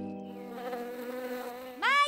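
Steady buzzing hum of a cartoon insect's wings in flight.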